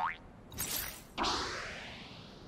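Cartoon sound effects: a short rising boing at the start, a brief burst of noise about half a second in, then a sudden whoosh a little over a second in that fades away.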